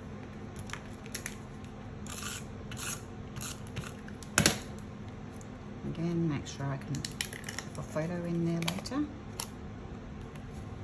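Hands handling paper and chipboard craft pieces on a table, a bow and clip being fitted to a frame: short scraping rustles and small clicks, with one sharp, louder click a little before halfway. A woman's low, wordless murmur sounds twice in the second half.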